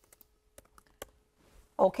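A few faint, irregular clicks over a faint steady hum, then a voice starts speaking near the end.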